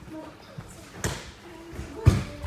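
A judo throw landing on tatami: one sharp thud of a body slapping down onto the mat about a second in. Faint children's voices in the dojo around it.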